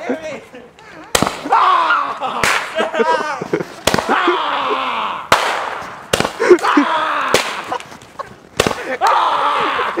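Firecrackers going off in a string of sharp cracks, about nine of them at uneven intervals, between loud stretches of people shouting and shrieking.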